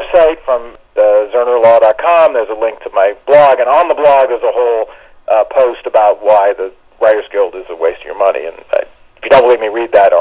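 Speech only: a person talking on without a break, with a thin, narrow sound like a telephone or radio line.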